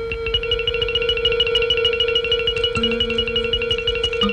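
Film background score: a single held note under a fast, rapidly repeating high note figure, with a lower note joining about three seconds in.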